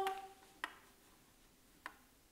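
A man's held sung note dies away in the first half second, then near silence in a room, broken by two faint clicks a little over a second apart.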